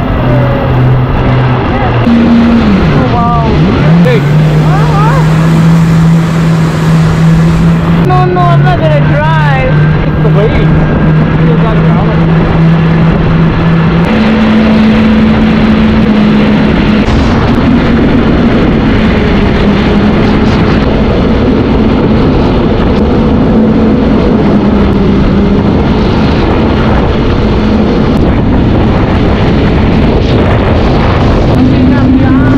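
Yamaha jet ski engine running hard at speed, with a steady rushing of water spray and wind. The engine note dips and then steps up in pitch a few seconds in, and steps up again about halfway through.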